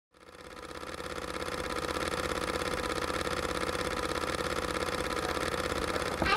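A steady, fast-pulsing mechanical whir that fades in over the first two seconds and then holds even.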